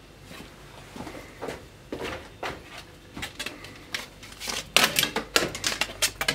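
Irregular small clicks and taps of hands handling a record turntable, sparse at first and coming quicker in the last second or two.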